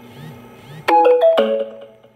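Smartphone notification chime: three quick notes stepping down in pitch about halfway through, ringing out over about a second.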